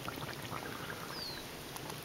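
Natural tar seep pool bubbling: scattered small pops and gurgles as gas bubbles break through the water and tar. About a second in, a short falling whistle is heard.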